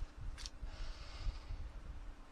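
Handling noise from a metal oxalic acid vaporizer wand being positioned against a beehive. A low, uneven rumble runs throughout, with one sharp click about half a second in and a brief hiss just after.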